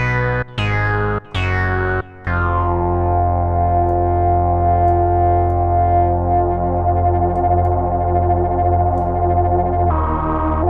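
FXpansion Strobe2 software synthesizer playing three short, bright-attacked notes, then holding one long, full note from about two seconds in. While it sounds, the oscillator is detuned and stacked into several copies, thickening the tone.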